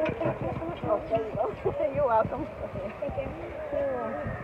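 Indistinct talking from more than one person's voice, with no clear words.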